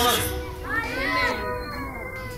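A high-pitched voice calls out about half a second in, its pitch rising and falling, over a faint steady hum.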